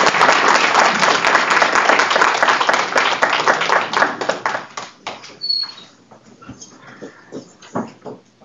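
Audience applauding, dying away about five seconds in; a few faint scattered knocks follow.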